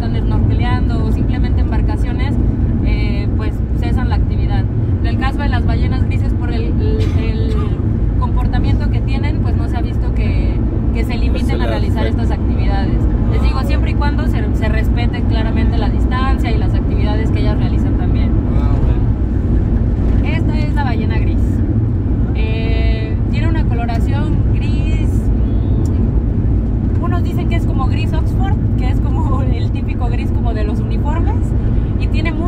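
Steady low rumble of a van on the road, heard inside its cabin, with a woman talking over it.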